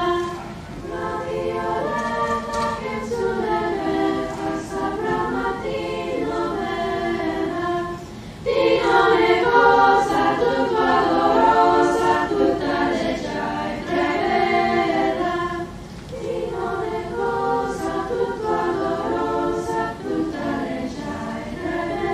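Girls' choir singing a cappella in several voices. The singing breaks off briefly twice, about eight and sixteen seconds in, and the middle passage is the loudest.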